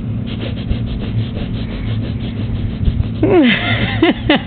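A steady low hum under a fast, even rasping rhythm; a little after three seconds in, a voice slides down in pitch, the start of laughter.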